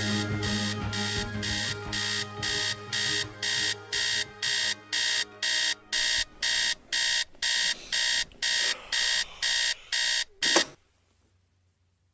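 Electronic alarm beeping rapidly, about three beeps a second, over the fading end of a song. It cuts off with a sharp click about ten and a half seconds in.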